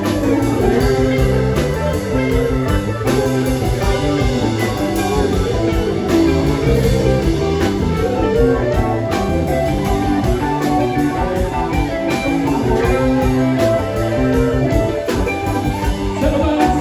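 Live band playing an instrumental passage: electric guitars over a drum kit and bass.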